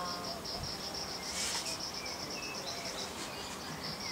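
Insect chirping in a rapid, even train of high-pitched pulses, about six a second. A brief hiss comes about one and a half seconds in.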